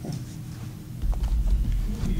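Microphone handling noise: a deep rumble with a few light knocks starting about a second in, as something is handled at the lectern.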